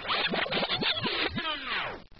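Electronic sound effects in a techno track: a quick run of falling pitch sweeps, like laser zaps, the later ones longer and slower. They cut off abruptly at the end.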